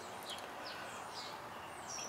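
Faint bird chirps, a few short high calls, over a low steady background hiss.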